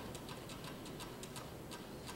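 Faint rapid ticking, several small clicks a second, over a low hiss.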